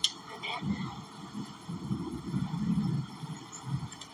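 Muffled, indistinct talking from two people, heard mostly as low-pitched voice sound, with a sharp click at the very start.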